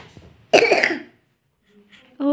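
A young boy coughing once, short and loud, from the cold and cough he is ill with.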